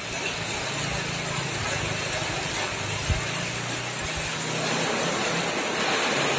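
Suzuki pickup truck's engine running at low speed as it turns around, a steady hum over the even hiss of rain on a wet street.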